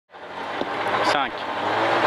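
Citroën Saxo rally car's four-cylinder engine running steadily, heard from inside the cabin while the car waits at the stage start line.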